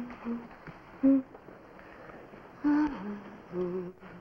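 A woman humming a tune to herself, in a series of short held notes that step up and down in pitch.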